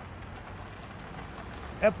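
Steady outdoor background noise: an even hiss with no distinct events. A man starts speaking near the end.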